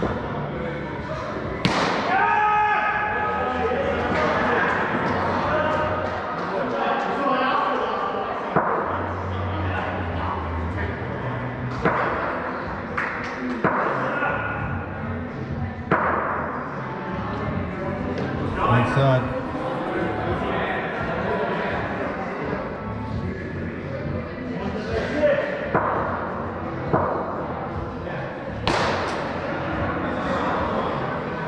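Play in an echoing indoor cricket hall: players calling out over steady background noise, with several sharp knocks and thuds a few seconds apart as bat and ball strike and the ball hits the netting and boards.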